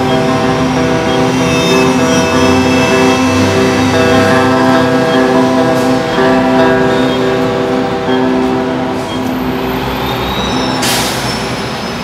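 Harmonica playing sustained chords over a strummed acoustic guitar, an instrumental close to a folk song, fading towards the end. A short hiss about eleven seconds in.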